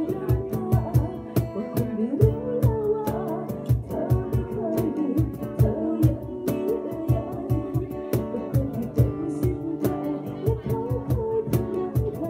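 Live band performance: acoustic guitar with a voice singing a melody over a steady low beat of about three thumps a second.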